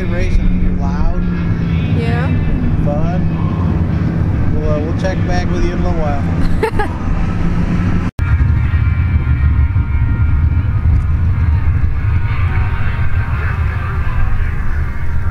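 Engines running on a dirt race track: a steady low engine drone under a voice for the first eight seconds, then, after a sudden cut, the denser sound of race car engines running with several higher engine tones.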